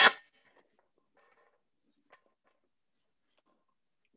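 Near silence, broken only by a faint soft rustle about a second in and a single small tap about two seconds in, as vegetables are handled at the counter.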